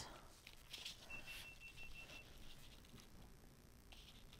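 Near silence, with a few faint, short scratches of a stencil brush dabbing paint through a plastic stencil onto paper.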